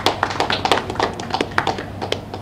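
Scattered applause from a small group of people: a quick, irregular run of sharp claps.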